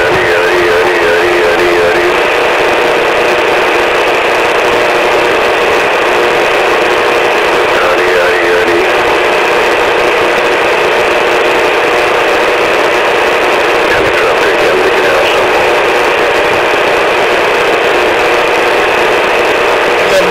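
Music carried over a CB radio channel and heard through the radio's speaker: thin and narrow in tone, with a steady hiss under it.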